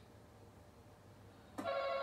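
Game-show face-off buzzer played through a TV speaker: a contestant buzzes in about one and a half seconds in, setting off a steady electronic buzzer tone that holds on. It is preceded by a short hush.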